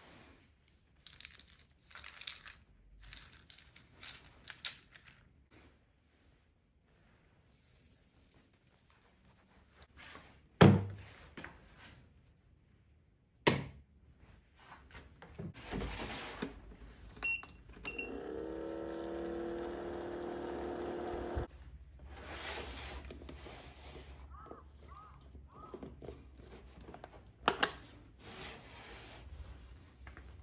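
Handling knocks and clinks from a vacuum flask, then about three seconds of water pouring from an electric airpot into the flask, rising in pitch as it fills and stopping abruptly. Two short faint beeps come just before the pour.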